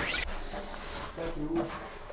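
A short falling swoosh right at the start, then steady background hiss with faint speech.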